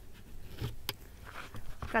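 A green Carson plastic valve-box lid is pried up and lifted off its box in the soil, with two light clicks a little under a second in.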